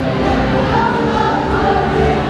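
Music with several voices singing together in long held notes, choir-like.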